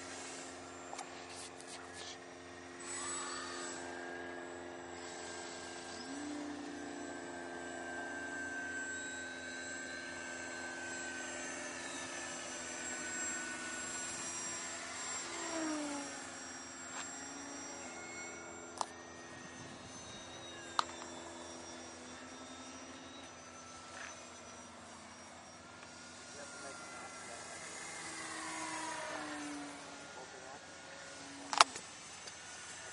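Several electric radio-controlled model airplanes flying at once: overlapping steady motor whines, each at its own pitch, some sliding up or down as a plane passes. Two sharp clicks come about two-thirds of the way through.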